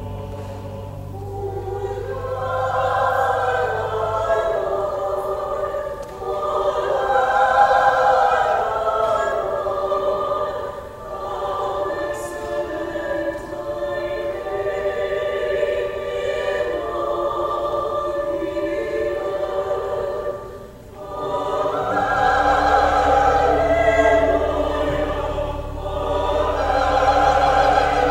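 Robed church choir singing a sacred anthem in parts, with low sustained organ bass notes at the start and again from about three quarters of the way through. The singing breaks off briefly between phrases just before that point.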